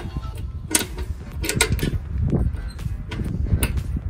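Several sharp metal clicks and rattles as a brass propane quick-connect coupling is pushed and worked against an RV trailer's quick-connect fitting by hand without latching, over a low wind rumble on the microphone.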